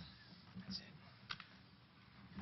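Two faint clicks from the presentation laptop's keys as the slides are brought up, over low murmured voices in a quiet hall.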